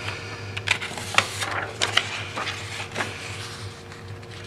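Sheets of printmaking paper and a torn paper mask being handled and moved: scattered light rustles and taps over a steady low hum.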